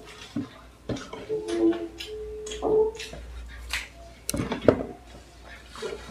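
Close-up eating sounds of fried samosas: crisp pastry crunching and chewing in quick irregular bites, with short murmured voice sounds early on and a sharp knock of a dish or cup about four and a half seconds in.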